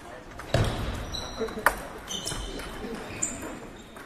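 Table tennis ball being struck during play: two sharp clicks about a second apart, the second the loudest, echoing in a large hall over background chatter.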